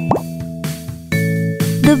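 Children's background music with a quick rising cartoon 'bloop' sound effect at the start. The music's held notes drop quieter, then come back louder about a second in.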